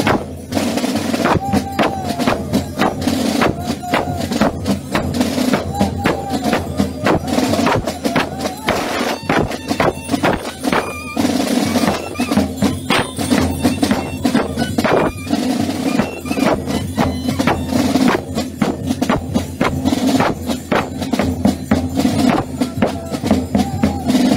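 Gilles carnival drum band playing in the street: a large bass drum beaten steadily with sticks in the traditional gille dance rhythm, with a wavering melody carried over the beat.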